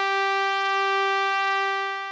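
Background film music: a single synthesizer chord held steady, easing off near the end.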